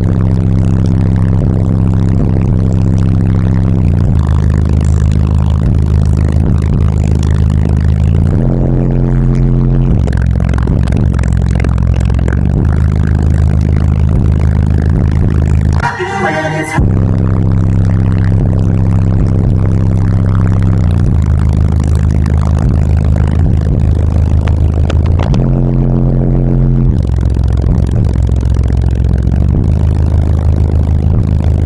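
Bass-heavy music played very loud through car subwoofers, with deep bass notes held in long blocks that change every few seconds. The bass is strong enough to blow hair around. There is a brief break in the bass about halfway through.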